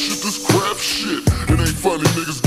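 Chopped-and-screwed hip hop: slowed, pitched-down rapping over a beat with heavy drum hits.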